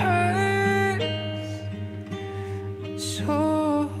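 A slow song: a male voice sings the line "but it hurts… so much" in long held notes over guitar and a steady bass.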